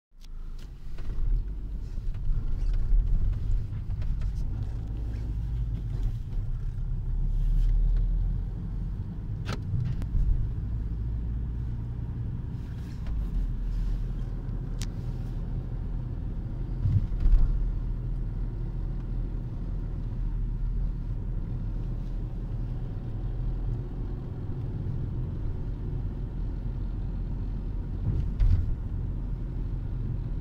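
Car driving slowly, heard from inside the cabin: a steady low rumble of engine and road noise, with a few sharp clicks.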